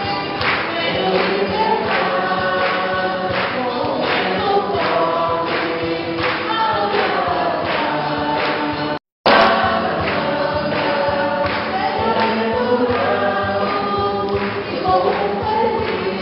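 Choir singing a hymn over a steady beat. The sound cuts out completely for a moment about nine seconds in, then the singing resumes.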